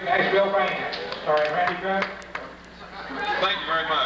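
A man's voice speaking, the words not made out, with a short pause about two seconds in.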